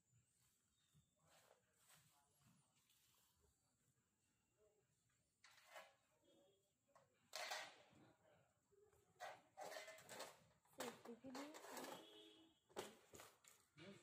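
Faint, indistinct voices in the background, starting about halfway through after several seconds of near silence.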